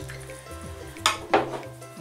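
Soft background music plays throughout. A little after a second in there are two short knocks as a bowl of grated cheese is set down on a wooden table.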